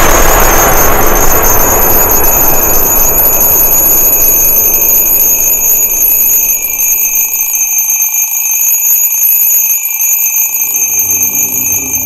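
Alarm clock ringing with a steady shrill tone, cutting off suddenly at the end. At first it sits over a loud rushing wash of sound that fades away over the first several seconds.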